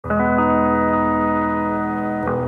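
Background music: sustained chords that start at once and are held steady.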